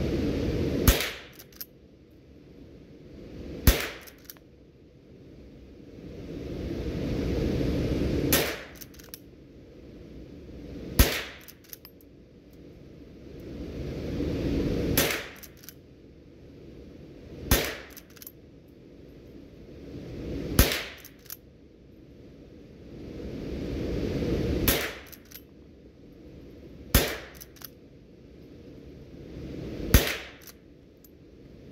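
A Henry lever-action .22 LR rifle fired about ten times at a steady pace, a shot every two to four seconds, each crack followed by quick clicks of the lever being worked to chamber the next round. A rushing background noise swells back up between shots.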